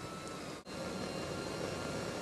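Steady background hiss with faint thin hum tones and no other event, cutting out suddenly for a moment a little over half a second in where the recording is spliced.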